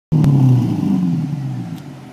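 Exhaust note of a 2004 Holden VZ Calais through a new aftermarket sports exhaust with twin tips. It is loudest at the start, then dies away steadily as the revs fall back after a blip of the throttle.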